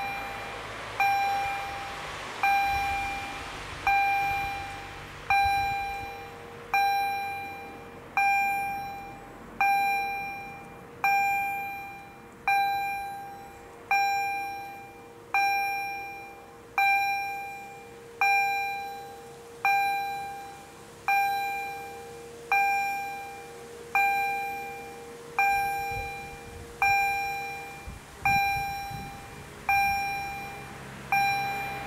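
Railway level-crossing warning bell striking about once every second and a half, each strike ringing and fading before the next, warning of an approaching train.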